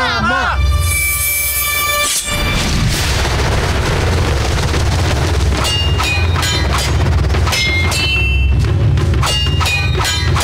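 Cartoon fight soundtrack: a chorus of voices cheering at the very start, then a sustained metallic ring of blades about a second in. Dramatic music follows, with heavy booms and short metallic clangs of blades.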